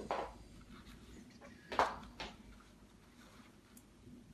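Handling noises from a travel crib being assembled: three short scuffs and rustles of the crib's mesh fabric and frame as the mattress pad's loops are worked onto their hooks, the loudest a little under two seconds in.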